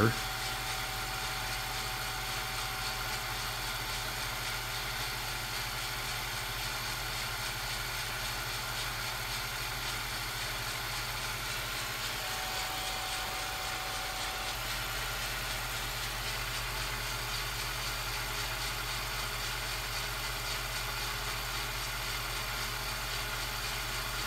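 Steady low electrical hum with an even hiss, unchanging throughout, and a faint thin tone near the start and again about halfway through: the background noise of a tape transfer, with no live sound from the trains.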